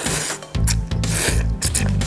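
A person slurping noodles up from chopsticks in three hissing sucking draws, the middle one the longest and loudest.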